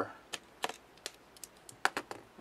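Scattered light clicks and taps, about six in two seconds with the sharpest near the end, from a steel digital caliper being handled and lifted off a small brushless motor's shaft.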